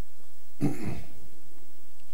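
A single short throat-clear, a little over half a second in.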